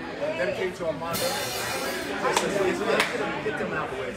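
People talking over one another in a large room between tunes, with no music playing. About a second in comes a short hissing crash, and two sharp knocks follow a little over a second later.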